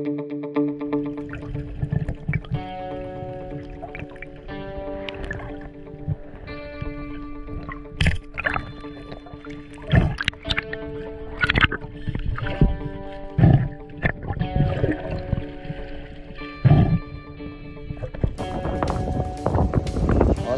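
Background music with steady held notes, over irregular gurgling and sloshing water noise picked up by a camera underwater.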